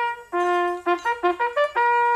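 Bugle call: a held note, then a quick run of short notes, ending on a long held note.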